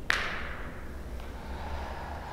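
A forceful exhale that starts abruptly about a tenth of a second in and fades out over about a second, over a low steady hum.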